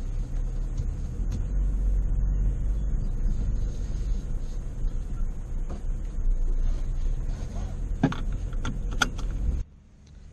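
Pickup truck driving slowly over a rough grass track, heard from inside the cab as a steady low rumble, with a couple of knocks and rattles near the end. The sound stops abruptly just before the end.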